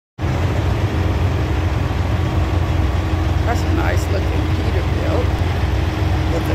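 Semi truck's diesel engine idling steadily: a deep, constant low rumble with a steady hum above it. Faint voices come in about halfway through.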